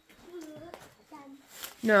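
Speech only: a young child's voice, quiet and brief, then a woman saying "No" near the end.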